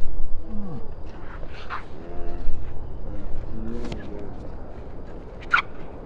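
Tennis ball struck by racquets three times, about two seconds apart, with distant voices over a steady low rumble.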